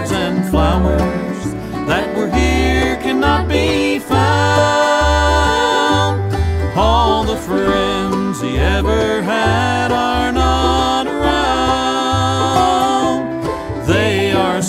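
Bluegrass band playing an instrumental passage: banjo and guitar over a bass line with a steady beat.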